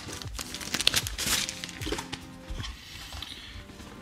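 Soft background music with scattered rustling and clicks from a drone's remote controller being handled and unpacked.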